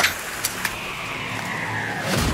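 Trailer sound effects: a steady rushing noise with two quick clicks about half a second in and a faint tone that slowly falls in pitch in the second half.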